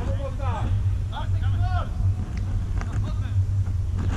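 Voices shouting across a football pitch during a match, two short calls in the first two seconds and fainter ones after, over a steady low rumble.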